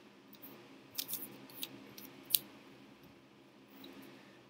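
Small paper cut-outs being handled and snipped with scissors at a desk: a few short, crisp snips and rustles, the loudest a little past the middle.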